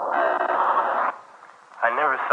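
A thin, tinny, radio-like sound: a hiss of noise for about a second, then a short lull, then a voice starts talking near the end.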